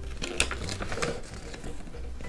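A folded paper insert being unfolded and handled: light paper rustling with a few sharp crackles.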